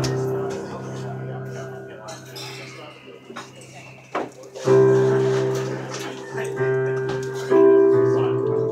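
Instrumental opening of a slow folk ballad played by keyboard, violin and upright bass. Sustained chords are struck about halfway through and again near the end, each ringing and fading, with a brief lull between phrases.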